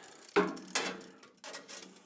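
Steel tape measure clicking and scraping as its blade is handled and laid across the laser's metal bed: one sharp click about half a second in, then a few softer ticks.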